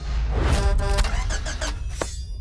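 A vehicle engine starting and revving, a sound effect laid over music as a closing sting.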